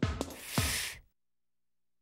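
A few quick knocking taps of cartoon footstep effects as the walking letter arrives, then a breathy 'fff' hiss lasting about half a second, the sound of the letter f.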